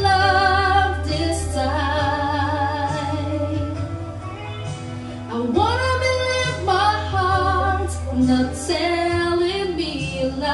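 A woman singing into a handheld microphone, holding long notes with vibrato. It softens about halfway through, then swoops up into a louder phrase.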